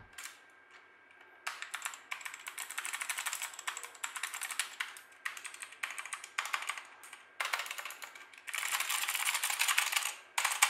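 Typing on a Royal Kludge RK918 mechanical keyboard: rapid keystroke clicks in several bursts with short pauses between them, starting about a second and a half in and densest near the end.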